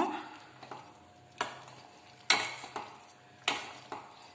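A utensil stirring and mashing thick pav bhaji in a stainless steel pan: three strokes about a second apart, each sudden and fading quickly.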